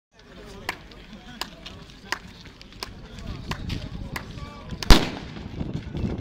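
A single loud starting-pistol shot about five seconds in, firing the start of the team's run. It is preceded by a row of faint sharp ticks, about one every 0.7 s.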